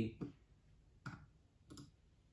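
A few faint, short clicks from a computer being worked at the desk, about one second in and again just before the two-second mark.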